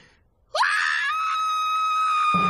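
Cartoon characters screaming in fright: after a short silence, one long high scream starts about half a second in, sweeps up and holds steady.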